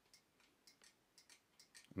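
Near silence with a few faint, irregular ticks: the clicks of a footswitch paddle being pressed underfoot.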